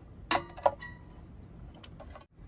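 Two sharp clicks close together, about a third of a second apart, from the broiler's glass bowl rim and metal lid knocking as they are handled, followed by low handling noise.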